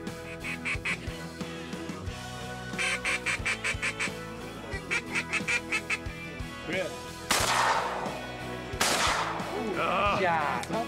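Three quick runs of rapid duck quacking, about eight quacks a second. Near the end come two loud shotgun shots about a second and a half apart, each trailing off. Background music plays underneath.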